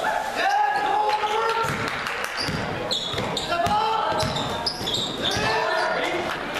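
A basketball dribbled on a hardwood gym floor, with short high sneaker squeaks and voices calling out, all echoing in the gym.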